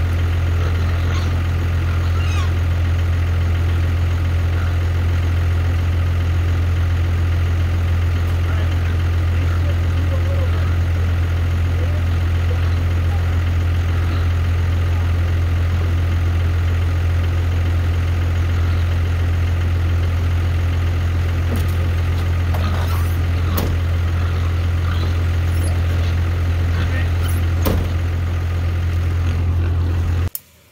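A motor running steadily, a loud unchanging low hum, with a few faint knocks and clicks in the last several seconds.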